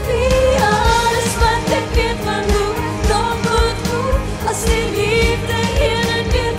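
A woman singing a pop song into a microphone over backing music with a steady beat, her voice holding long wavering notes.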